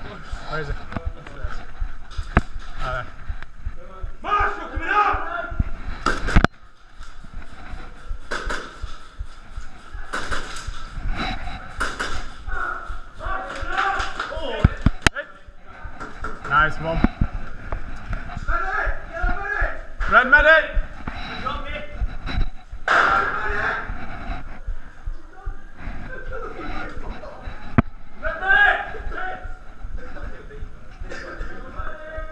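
Indistinct men's voices calling out among airsoft players, broken by scattered sharp knocks and clicks, the loudest about six seconds in.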